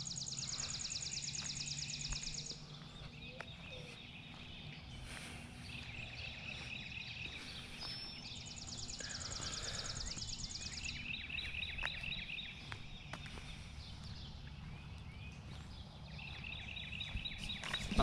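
Songbirds singing in a morning chorus. A high, rapid, dry trill runs about two and a half seconds near the start and comes again in the middle, and shorter, lower chirping phrases follow later on.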